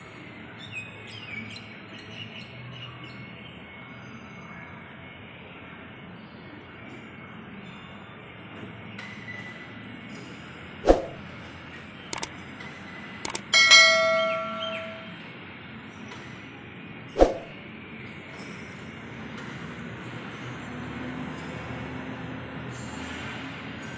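Metal-on-metal strikes over a steady low background noise: two sharp knocks, about eleven and seventeen seconds in, with a few small clicks between them, and a louder clang about halfway through that rings on for a second or so.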